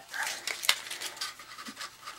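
Soft rustling and scraping of cardstock being handled and pressed into place inside a paper box card, with a few small clicks, one sharper about two-thirds of a second in.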